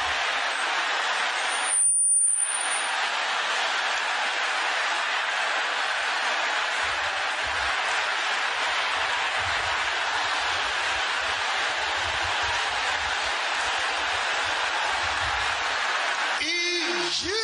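A large congregation praying aloud all at once: a steady wash of many shouting voices with no single voice standing out, broken by a short gap about two seconds in.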